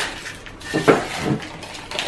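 The plastic toy capsule from a Kinder Surprise egg being pried open by hand, with a few clattering clicks and knocks of hard plastic near the middle.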